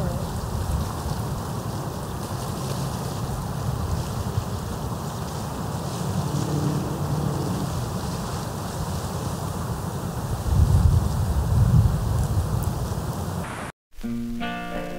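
Wind buffeting an outdoor microphone: a steady rushing noise with low rumbling gusts that grow louder about ten to twelve seconds in. It cuts off abruptly near the end.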